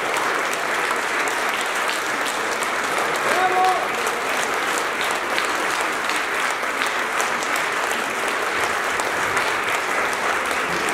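Concert-hall audience applauding steadily, a dense even clapping. A single voice calls out briefly about three and a half seconds in.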